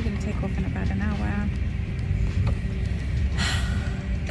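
Steady low rumble of an airliner's cabin, with background music and a few brief vocal sounds over it; a short hiss comes about three and a half seconds in.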